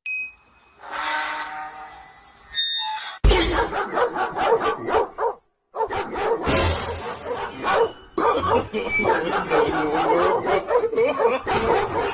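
A dog barking repeatedly, starting about three seconds in, with a short break near the middle.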